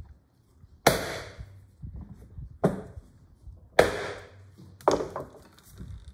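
Iron bench holdfasts being struck with a wooden mallet to set them and clamp a board to the workbench: four sharp knocks about a second apart, the first about a second in.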